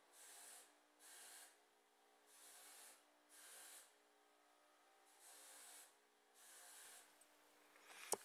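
Near silence broken by soft breaths close to the microphone: six hissy breaths, in and out in pairs, one pair about every two and a half seconds, over a faint steady background tone.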